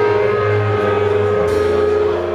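Live rock band playing an instrumental passage: held electric guitar chords over bass guitar and a drum kit.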